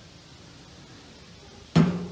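The metal hood of a 22-inch Blackstone griddle is shut onto the griddle once, near the end: a single sharp clang with a low ringing that carries on afterwards.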